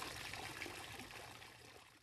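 Pool water sound effect, a soft watery wash that fades away steadily.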